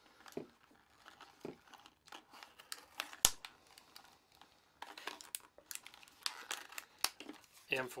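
Plastic blister pack with a cardboard backing crinkling and crackling as it is torn open by hand, with one sharp snap about three seconds in.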